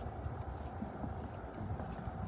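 Footsteps on stone paving at a walking pace, over a low steady rumble on the microphone.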